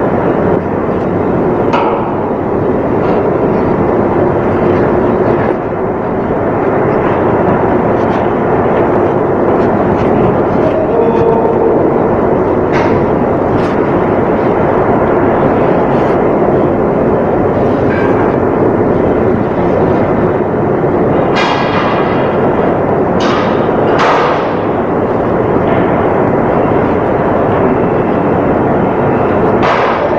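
Loud, steady machinery noise in a ship's steel pumproom, with scattered knocks and clanks, a few sharper ones together about two-thirds of the way through.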